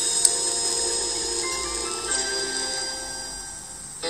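Radio station jingle after a news sign-off: held chord tones, with some notes changing about halfway through, slowly fading out. A sharp click comes just after the start.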